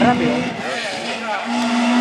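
Peugeot 205 GTI rally car's engine approaching on the stage, holding one steady note that fades briefly and then grows louder over the last half second as the car comes round the hairpin.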